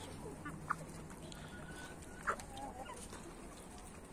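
A flock of chickens, hens and young birds, clucking faintly while feeding, with a few short scattered calls, the sharpest a little after two seconds in.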